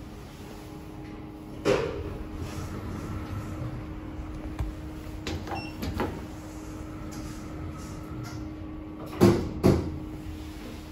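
Inside a lift car: a steady hum, a single knock about two seconds in, a few button clicks with a short high beep around five and a half seconds, then the centre-opening doors shutting with two loud thuds near the end.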